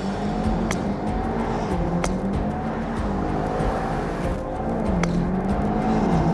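Background music with a low, wavering bass drone that repeats its dip about every two seconds, with a few sharp hits at about one second, two seconds and five seconds in.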